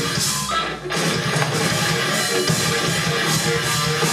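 Live rock band with distorted electric guitars, bass and drum kit playing loud. The band breaks off briefly just under a second in, then comes crashing back in.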